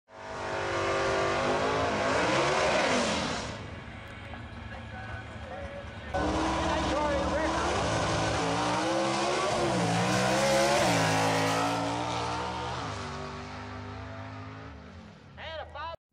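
A drag-racing car's engine revving, then about six seconds in it comes in suddenly and loudly, its pitch climbing and dropping repeatedly as it pulls away, fading toward the end.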